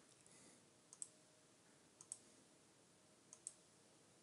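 Three faint computer mouse clicks about a second apart, each a quick double tick, over near silence.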